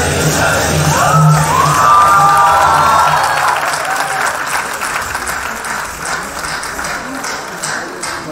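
Audience applause as the music ends: a low drone and a few sliding tones fade out in the first three seconds, and the clapping then slowly dies away.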